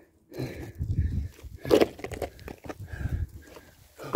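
A man breathing hard with exertion while scrambling over granite: irregular heavy breaths mixed with rubbing and bumping of the phone against hand and rock.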